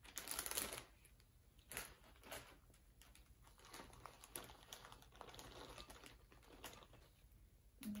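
A plastic bag of bonsai soil crinkling loudly as it is picked up, then soil being poured from the bag into a bonsai pot: a soft, grainy rustle with occasional crinkles of the bag.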